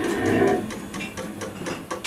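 Free-improvised jazz on alto saxophone, double bass and drums played with mallets: a held low tone swells about half a second in and fades, followed by scattered light, sharp taps and clicks.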